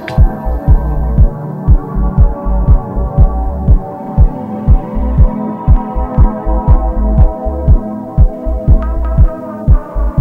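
Minimal deep house music: a steady kick drum about twice a second over a deep sustained bass and held chords. The high hi-hat ticks drop out right at the start, leaving kick, bass and chords.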